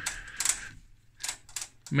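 Rotary volts/div range switch on a 1980 Hameg HM312-8 oscilloscope being turned by hand, clicking from one detent position to the next: a pair of clicks about half a second in, then three more in the second half.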